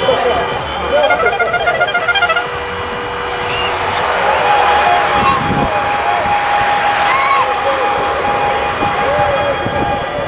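Tour de France publicity caravan floats passing with their loudspeakers playing music and voices, amid spectators' shouts; a long steady horn tone holds from about four seconds in to the end.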